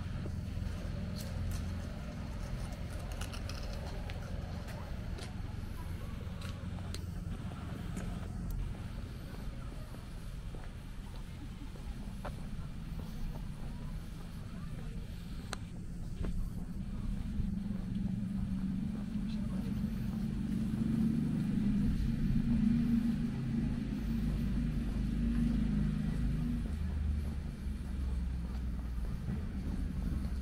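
A steady low outdoor rumble that swells for several seconds past the middle and then eases, with faint voices of passers-by.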